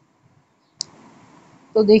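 Near silence, broken about a second in by a single sharp click, followed by faint room hiss; a woman starts speaking near the end.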